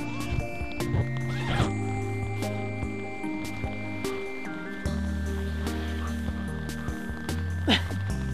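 Background music of long held tones that change pitch every few seconds, with scattered light clicks and a brief gliding squeal near the end, which is the loudest moment.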